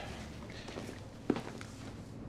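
A single soft knock about a second in, over a faint low room hum.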